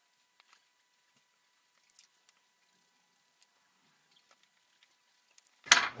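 Near silence with a few faint scattered clicks, one a little louder about two seconds in. A man's voice starts just before the end.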